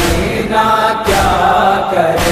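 Voices chanting a nauha lament in a sustained, drawn-out chorus between the reciter's lines, with a few sharp beats cutting through.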